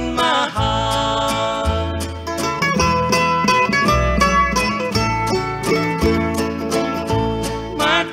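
Instrumental break of a 1950s country song: plucked mandolin and guitars over a steady bass line, just after the last sung word at the start.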